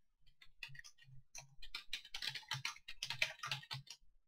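Typing on a computer keyboard: a quick run of keystrokes that grows denser in the second half and stops just before the end.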